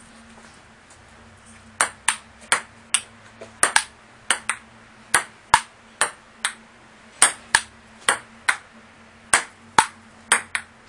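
Ping-pong rally: the ball clicks sharply off the paddles and the wooden table top in quick back-and-forth. It starts about two seconds in, with a hit every third to half second.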